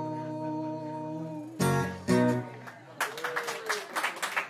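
The end of an acoustic song: voices hold a long final note over a ringing acoustic guitar chord. Two last strummed chords follow, and about three seconds in clapping and a laugh begin.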